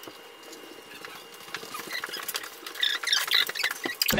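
Pen scratching and paper rustling on a clipboard as forms are filled in and pages handled, a run of small clicks and scrapes that grows busier and louder in the last second or so, where faint voices join in.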